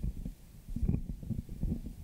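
Handling noise of a handheld microphone being passed from one person to another: irregular low rumbling and soft knocks.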